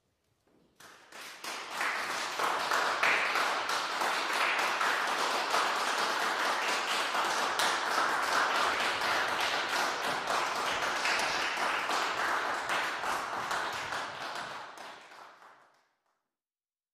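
Audience applauding after a saxophone duo's performance. The clapping swells in about a second in, holds steady, and dies away near the end.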